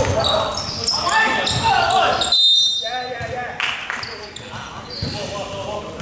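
Indoor basketball game: a ball bouncing on the hardwood court, sneakers squeaking in short high chirps, and players shouting, all echoing in a large sports hall.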